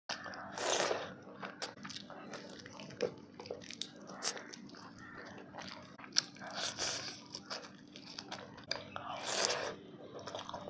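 Biting and chewing crisp fried fish eaten by hand, with crunches and sharp mouth clicks. Louder crunching bites come about a second in and again near the end.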